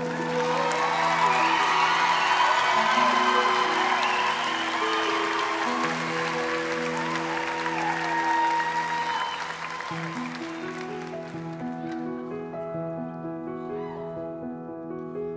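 A theatre audience applauding and cheering over soft, sustained instrumental chords; the applause dies away about ten seconds in, leaving the music.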